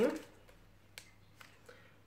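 A few faint, sharp clicks from a plastic product packet being handled, three of them in the second half, after a short spoken word at the very start.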